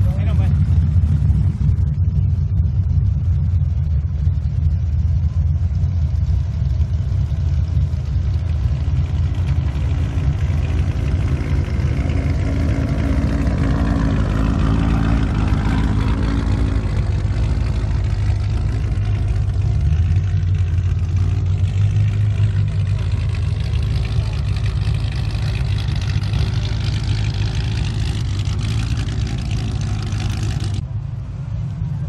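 Classic cars' engines running at low speed as the cars roll past one after another, a steady deep exhaust note throughout; about halfway through, one car's sound swells and fades as it goes by close.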